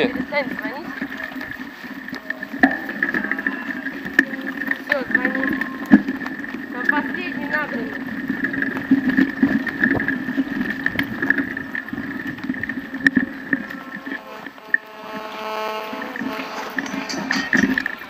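Mountain bike riding over a bumpy dirt forest trail: tyres rolling and the bike rattling, with frequent knocks over a steady hum. Near the end a mobile phone rings with a repeating electronic tone.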